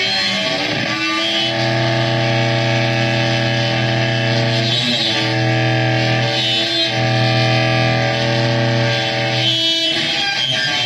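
Saxophone played through effects pedals, distorted into a dense, sustained drone of held notes over a low bass tone. It comes in three long swells, broken briefly about five and seven seconds in.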